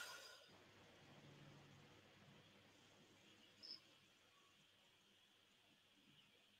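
Near silence: faint room tone with one brief, faint, high blip about halfway through.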